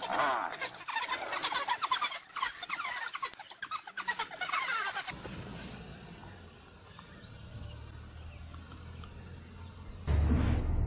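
Rapid, high-pitched animal squeals and chirping calls, many overlapping, in the first half. After an abrupt change about five seconds in, only a quieter low steady hum remains.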